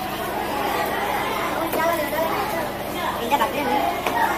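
Background chatter of several people talking, with a few short sharp knocks, the loudest about three seconds in.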